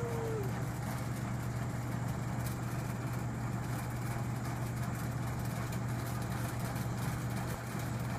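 A steady low hum with an even rushing noise over it, unchanging throughout.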